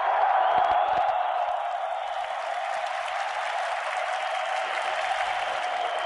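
Audience applauding in a steady, sustained round.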